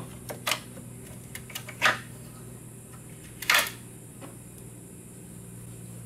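Several short, sharp plastic clicks and knocks, a few seconds apart, as sensor connectors are unclipped and the plastic upper intake of a 2003 Cadillac CTS engine is handled. The loudest knock comes about three and a half seconds in, over a steady low hum.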